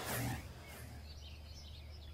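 Faint outdoor ambience: birds chirping over a low steady hum, with a short louder sound in the first half second.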